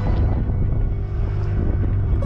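Wind rumbling on the microphone aboard a wooden canoe under way at sea, over a steady rush of water along the hull.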